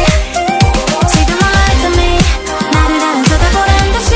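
K-pop dance track in an instrumental passage: synth notes slide up and down in pitch over a steady beat, with deep bass hits that drop in pitch.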